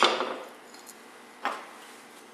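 A stainless steel tube handled on a workbench: a sharp metallic clink at the start, then a softer knock about a second and a half later.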